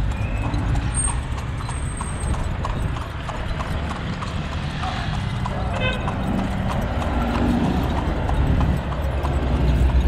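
A carriage horse's hooves clip-clopping on the asphalt road at a steady pace, about two or three strikes a second, over a continuous low rumble.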